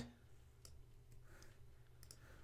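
Near silence: faint room tone with a low hum and a couple of faint computer mouse clicks about a second apart while text is selected and copied on screen.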